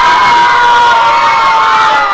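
A crowd in a hall cheering and shouting loudly just after a karate takedown puts a fighter on the mat. One long, high cry is held through the noise and sinks slightly near the end.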